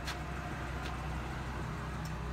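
Ford F-350 Super Duty's Triton V10 idling: a steady low hum, with a light click right at the start.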